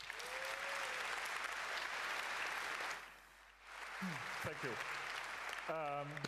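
Audience applauding in a lecture hall, about three seconds of clapping that fades, then a second, shorter round near the end.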